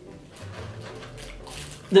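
Faint rustling and handling of sweet packaging: a box of chocolates and wrappers being handled, with small scattered clicks.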